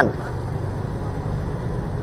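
Steady low running noise of a motorbike moving slowly in heavy traffic, engine and road noise blended together.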